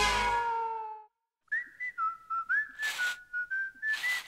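Closing music ringing out and fading, then a short silence. About a second and a half in, a whistled tune starts, a single clear tone stepping and sliding between notes, with a few soft swishes beneath it.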